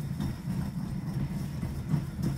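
Stone pestle grinding whole spices in a granite mortar: a continuous, rough, low grinding.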